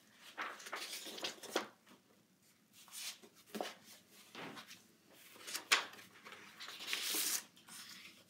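Sheets of scrapbook cardstock and finished layout pages being picked up, slid across a table and set down: a run of irregular papery swishes with a few light taps, the broadest swish near the end.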